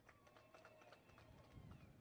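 Near silence in a pause between spoken phrases: faint background with a few soft clicks.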